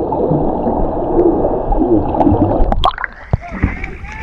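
Muffled underwater rush and gurgle of water and bubbles around a submerged camera as a swimmer moves through the sea. About three seconds in, the camera breaks the surface: the muffled noise cuts off and gives way to open-air splashing of water.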